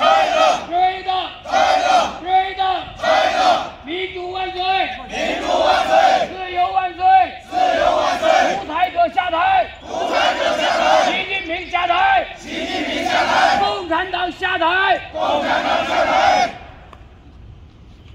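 A crowd of protesters shouting a slogan in unison, in short, loud, regular shouts about two a second, stopping shortly before the end.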